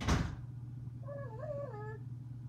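A short, sharp burst right at the start. About a second in, a Pomeranian gives a high, wavering whine that dips and rises and drops in pitch at the end.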